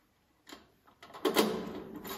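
A key being worked in the lock of a small lockable box: a few light clicks, then a clatter of metallic clicks and rattling from a little past a second in as the lock is turned to open the box.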